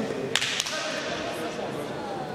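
A single sharp crack, like a slap, about a third of a second in, with a short echo of a large hall, over faint background voices.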